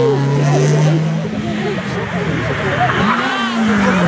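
Rally car engines on a closed road stage: one car's engine falls in pitch and fades as it drives away in the first second, then another car's engine comes in about three seconds in, its pitch rising and then falling. Spectators' voices chatter throughout.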